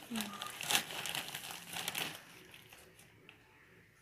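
Plastic sack crinkling and rustling as a hand digs compost-and-soil planting mix out of it, busiest in the first two seconds, then dying down.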